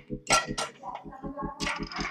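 Metal clanks and clinks from a gym cable-machine handle attachment being picked up and handled, twice, with a brief ring after the second.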